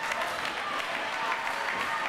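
Wrestling crowd clapping and calling out, a steady patter of applause with voices mixed in.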